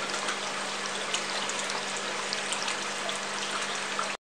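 A steady trickle of water falling from a clear Y-shaped splitter nozzle onto wet rockwork in an aquaterrarium, with faint scattered drips, over a low steady hum.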